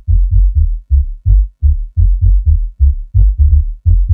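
Electronic rave track stripped down to its synth bass groove: a rhythmic run of short, deep bass notes shifting in pitch, about four a second, with no drums. Faint ticks creep in near the end.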